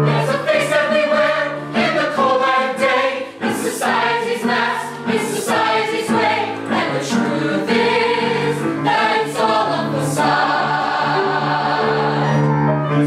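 A group of voices singing together as a choir over instrumental accompaniment, held notes and moving phrases.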